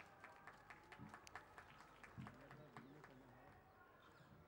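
Near silence: faint open-air room tone with a scatter of light clicks and a faint, distant murmured voice in the second half.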